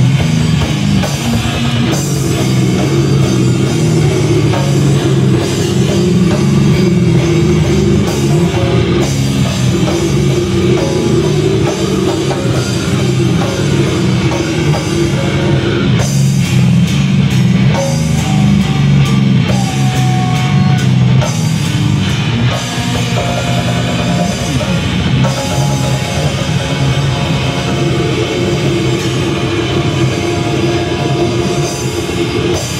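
A heavy metal band playing live, heard from within the crowd: loud, dense distorted electric guitars over a drum kit.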